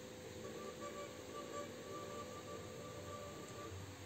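Cretan lyra bowed very softly: a faint held note comes in about half a second in and fades out shortly before the end.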